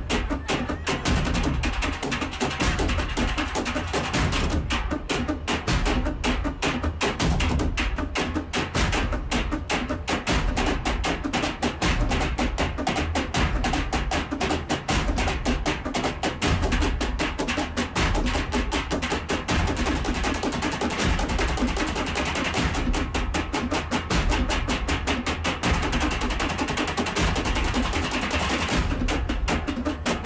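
Percussion-led music: fast, steady drumming with sticks on metal oil drums, running without a break.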